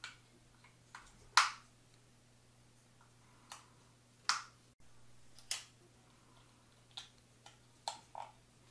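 Batteries being pressed into the plastic battery compartment of a SwitchBot thermometer-hygrometer and the back closed up: about half a dozen short, sharp plastic clicks and snaps, scattered, the loudest about a second and a half in.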